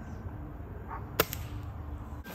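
A single sharp shot from a scoped rifle just over a second in, followed at once by a fainter click, over a steady low background rumble.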